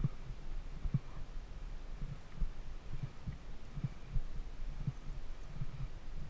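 Low, irregular thumping rumble on the microphone, a few soft thumps a second, with a faint steady hiss under it.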